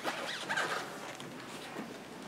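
Fabric rustling close to a clip-on microphone as the wearer's vestments move with his arms, in short irregular strokes.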